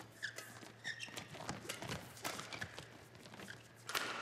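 Badminton rally: rackets hitting the shuttlecock in quick exchanges, with shoes squeaking and players' footsteps on the court. Near the end comes a sharper, louder hit, the cross-court smash that wins the point.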